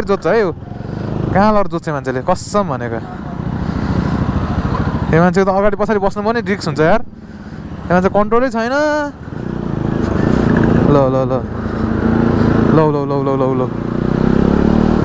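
A motorcycle running in slow traffic, heard from the rider's seat as a steady low engine and road rumble. A person's voice comes in several phrases over it and is the loudest sound.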